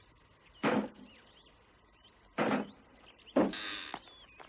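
Two short, dull knocks about two seconds apart, then a brief rustling hiss near the end.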